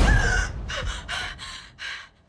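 A loud thump at the very start, then a person gasping and panting in about six short, rapid breaths.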